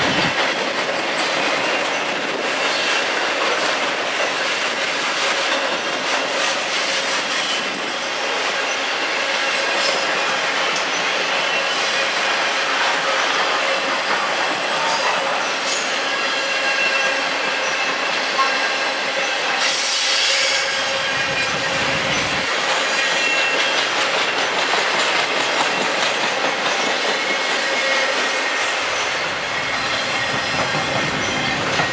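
A circus train's loaded flatcars rolling past close by: a steady rumble of wheels on rail, with high-pitched wheel squeal now and then, loudest about twenty seconds in.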